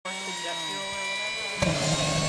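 Turbine helicopter engine whining with several steady high tones as it spools up. About one and a half seconds in, the sound jumps suddenly louder and a low hum and rushing noise come in.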